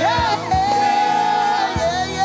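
Gospel praise team singing with band accompaniment. A woman's lead voice slides up at the start and then holds a long note over the backing singers.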